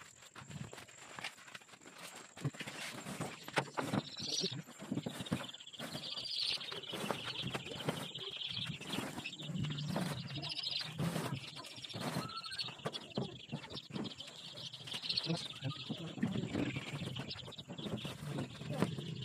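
A crateful of young chicks peeping together, a dense high chorus that swells from about four seconds in, while a hand reaches in among them. Short knocks and rustles come from the plastic crate being handled.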